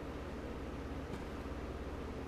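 Steady low hum and hiss, with one faint snip of small scissors cutting a flower bud off a pepper plant about a second in.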